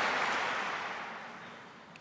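Applause from a large audience dying away, fading steadily to almost nothing by the end.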